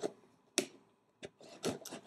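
A few short sharp clicks and taps as a package is handled and opened, the loudest about half a second in, with smaller ones near the end.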